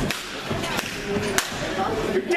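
A single sharp slap-like crack about one and a half seconds in, over the voices of a crowd in a hall.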